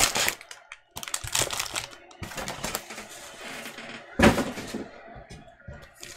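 Foil trading-card packs rustling and knocking against a cardboard hobby box as they are pulled out and handled, in a few short bursts with the sharpest about four seconds in.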